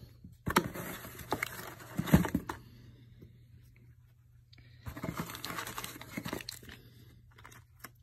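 Parts of a wooden guitar stand and their packaging being handled out of a cardboard box: rustling with a couple of sharp knocks in the first few seconds, a brief quiet stretch, then more rustling and a small click near the end.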